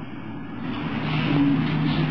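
A person's voice asking a question from off the microphone, distant and indistinct, starting about half a second in over the steady hiss of an old tape recording.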